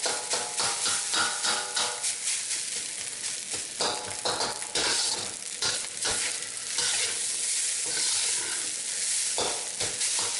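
Metal wok spatula scraping and turning fried rice in a hot carbon steel wok, in repeated strokes over a steady sizzle of the rice and sauce frying in oil.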